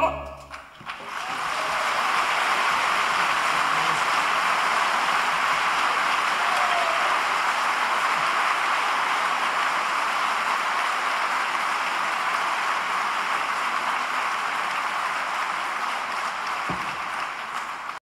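Audience applause that swells up about a second after the singing stops, then runs on steadily, easing a little near the end.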